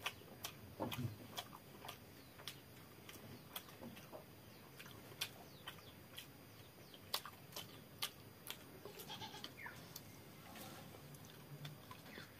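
Close-up mouth sounds of eating watery fermented rice (panta bhat) and potato bhujia by hand: sharp lip smacks and chewing clicks, one or two a second. A few short pitched calls are heard around nine to eleven seconds in.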